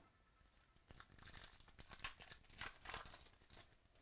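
Quiet scratchy rustling of a stack of glossy trading cards being handled and shuffled by hand: a quick run of short scrapes and clicks.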